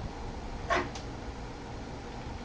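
Steady background hiss of room tone, with one short pitched sound falling slightly in pitch under a second in, followed by a faint click.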